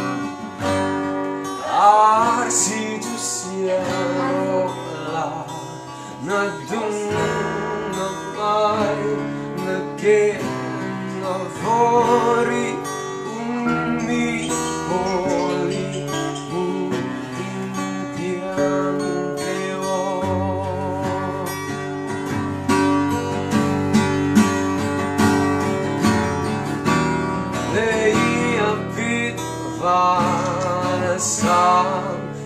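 Acoustic guitars played together in sustained chords, accompanying a man singing a slow song, with the voice coming in and out between guitar passages.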